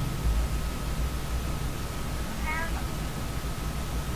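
A steady low hum of room and recording noise with a thin constant tone. About two and a half seconds in comes a brief, faint, high-pitched call.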